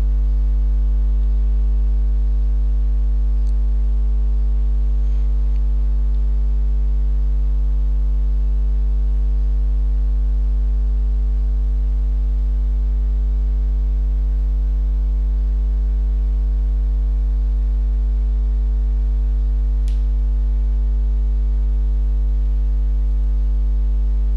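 Low, steady electrical mains hum, loud and unchanging throughout, with a single faint click near the end.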